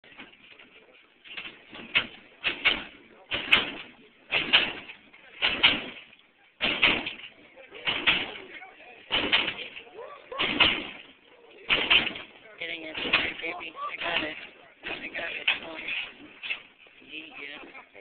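A lowrider's hydraulic suspension hopping the car, with a loud bang each time the body lifts and drops, about once a second. Voices are mixed in among the bangs.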